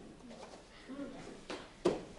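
Faint, low voices in a gym hall, then a single sharp thump near the end, the loudest sound, with a smaller knock just before it.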